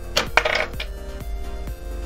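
Hard plastic LEGO parts clicking and clattering: a few sharp clicks, the loudest in the first half second, over background music.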